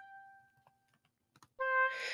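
Notation software's sampled oboe sounding single notes as they are entered. A high G fades out over the first half second, and about a second and a half in a lower C sounds. Faint computer-keyboard clicks come in between.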